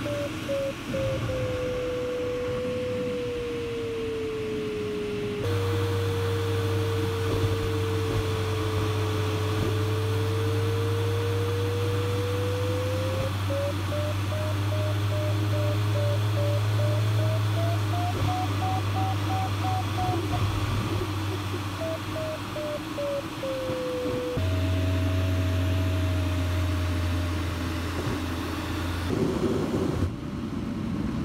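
A glider's audio variometer sounding over the cockpit's steady airflow hum. Its tone slides slowly up and down, beeping in short pulses when it is higher, which means the glider is climbing, and holding a steady lower note when the glider is sinking. The sound jumps at a couple of cuts.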